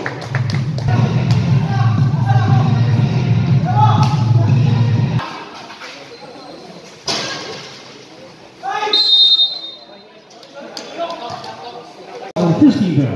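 Sounds of an amateur basketball game: crowd voices over a steady low hum of music that cuts off about five seconds in. A sudden burst of crowd noise follows the jump shot about seven seconds in, and another comes about nine seconds in with a short, high referee's whistle.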